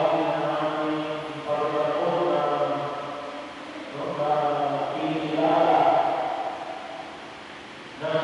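A man's voice chanting a liturgical text into a microphone, in long held notes with short pauses between phrases.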